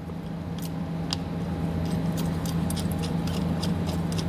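Light metallic clicks and ticks from a steel bolt with split lock washer and flat washer being handled and threaded by hand into an air spring's upper mounting bracket, over a steady low background hum.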